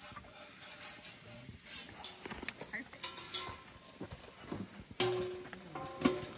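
Light metal clinks and knocks as a pizza is slid from a peel onto the pizza stone of a propane fire pit, then a sudden clatter with a brief ring about five seconds in as the steel dome lid is set on over it. Faint voices in the background.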